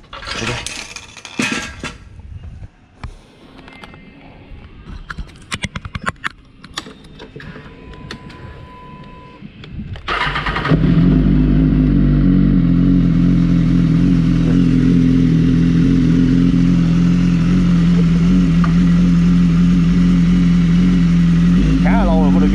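A 2016 BMW S1000RR's inline-four engine is cranked on the starter about ten seconds in, catches at once and then idles steadily; the bike has stood unused for two months. Before the start there are scattered clicks and knocks as the bike is handled off its rear paddock stand, and a short steady beep.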